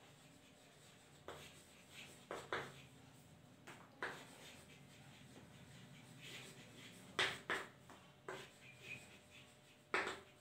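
Chalk writing on a blackboard: faint, short taps and scrapes in irregular clusters as letters are formed.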